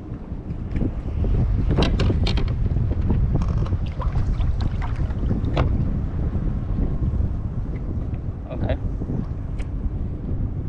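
Wind buffeting the camera microphone, a loud low rumble that swells about a second in, with scattered sharp clicks and knocks from gear being handled in the kayak.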